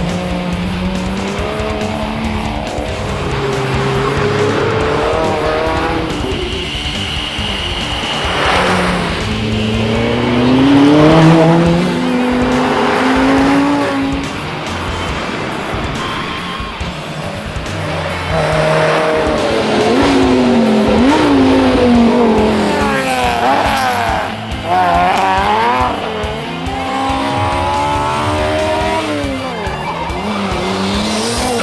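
Several race and rally cars accelerating hard past on a mountain road, engines revving up and down through gear changes, with a high tyre squeal about seven seconds in. Background music plays underneath.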